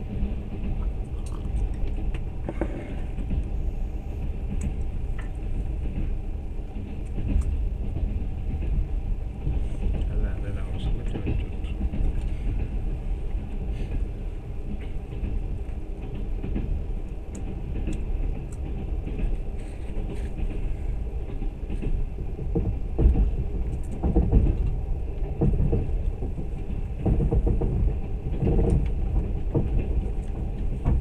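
Moving train heard from inside a passenger carriage: a steady low rumble from the running car, swelling somewhat in the second half, with scattered faint clicks.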